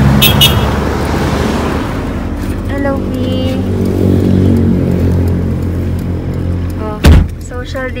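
Steady low drone of a car's engine and road noise heard from inside the cabin in slow traffic, with one loud, sharp thump about seven seconds in.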